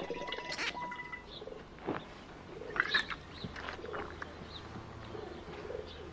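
Faint animal sounds: a few short, high chirps, like birds calling, with scattered soft clicks over a quiet background.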